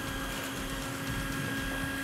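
Moulinex electric hand mixer running steadily, its beaters whisking a batter of eggs and sugar.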